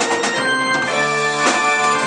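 A live band playing: held keyboard chords over drums, with a few sharp drum hits.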